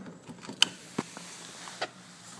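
Plastic clicks and knocks as a Whirlpool refrigerator water filter cartridge is slid into its housing and lined up. One sharp click comes about half a second in, then two softer knocks.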